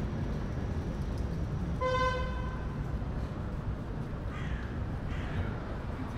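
Steady city traffic rumble, with one short vehicle horn toot about two seconds in: a single steady tone lasting under a second.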